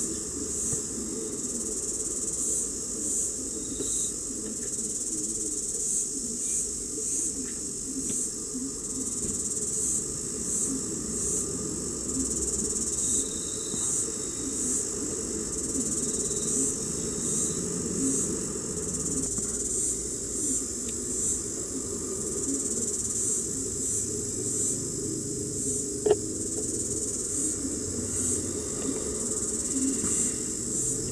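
High-pitched insect chirping, a steady trill pulsing in short chirps one to two times a second, over a low hum, with a single sharp click near the end.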